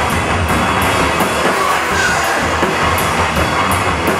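A loud live heavy rock band playing, with drum kit and cymbals hit several times a second over the amplified instruments.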